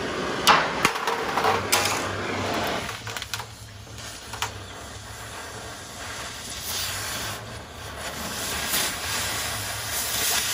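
Oxy-acetylene cutting torch hissing steadily as its oxygen jet cuts through steel plate, blowing molten slag out of the cut. A few sharp clicks or pops come in the first two seconds.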